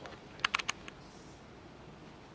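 A quick run of four or five sharp clicks about half a second in, then one fainter click, over a low steady room hiss.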